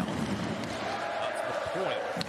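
Ice hockey arena crowd noise: a steady din of fans, with a sharp knock right at the start, typical of stick or puck against the boards.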